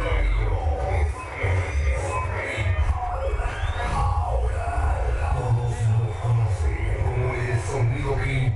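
Dance music played loud over a large DJ sound system (a Mexican 'sonido'), with heavy, steady bass, and a crowd's voices mixed in.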